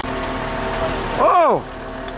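Concrete mixer truck's engine running steadily while it discharges concrete. About a second in, a man gives one drawn-out "oh" that rises and falls in pitch, the loudest sound here.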